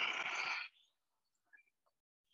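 A person's audible exhale through the mouth, a short breathy rush that ends under a second in, as she folds forward in a yoga flow; after it, only a few faint small sounds.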